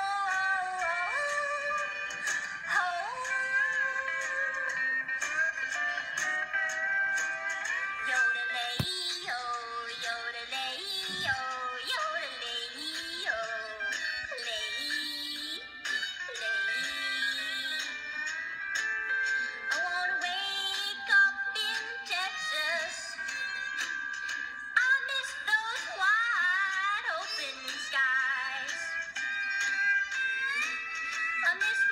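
A song sung in a high-pitched, chipmunk-style female voice, with music behind it.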